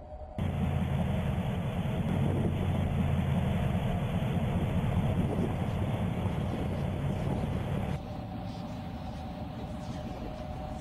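An SUV's engine running steadily as it drives up and pulls to a stop, a low engine noise that starts suddenly and cuts off abruptly about eight seconds in.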